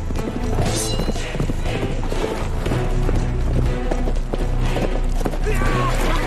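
Film score music over galloping horse hooves, with a high rising-and-falling call near the end.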